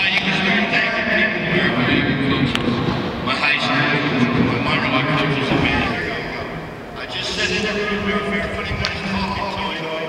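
Indistinct, echoing speech from a ballpark's public-address loudspeakers, a ceremony voice carrying across the stadium.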